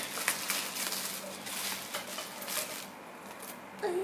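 Plastic packaging crinkling and rustling as a small action figure is unwrapped by hand, a quick run of crackles that dies away about three seconds in. A hummed vocal note starts at the very end.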